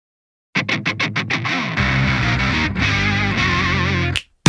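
Intro of a J-rock song: after half a second of silence, a quick run of about seven short distorted electric guitar stabs, then sustained distorted guitar over a steady bass, with a wavering lead line near the end.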